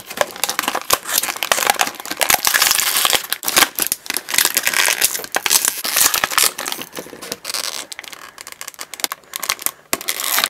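Clear plastic blister packaging crinkling and crackling as it is handled and pulled apart, in a steady run of irregular crackles and clicks.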